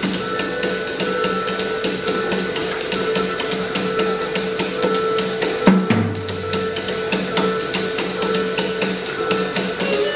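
Live improvised jazz from a drum kit, double bass and keyboard: the drums are played with sticks in a fast, steady stream of cymbal and drum strokes over held keyboard tones. A deep bass note comes in a little past halfway and sounds for about a second and a half.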